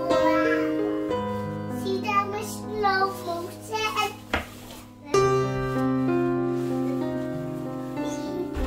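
Background instrumental music with sustained keyboard chords, a higher wavering melody over them in the middle, and a single click about halfway through.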